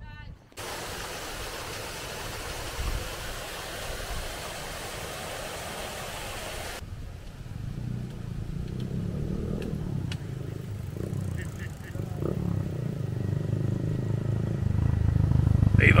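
A small single-cylinder Honda Monkey motorcycle riding up and getting steadily louder through the second half. Before it, a steady hiss that cuts off suddenly about seven seconds in.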